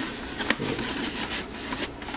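Hard plastic shell of a Modern Icons Soundwave helmet rubbing and knocking as it is handled and turned over, with a few sharp plastic clicks, the clearest about half a second in and another near the end.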